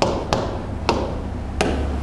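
Pen tip tapping on an interactive touchscreen board, four sharp, unevenly spaced taps while picking tools from the on-screen palette.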